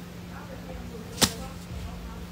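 A single sharp click or tap a little over a second in, against a low steady hum and faint voices.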